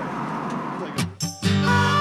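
About a second of outdoor motorcycle and wind noise that cuts off abruptly, then after a brief gap background music with guitar starts about halfway in.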